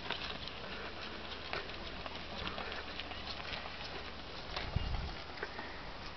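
Footsteps and light scuffing of walking on a tarmac road, heard as irregular short ticks, with a single low thump a little before the end.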